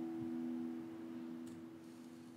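The final chord of an acoustic guitar ringing out, its low notes fading away steadily.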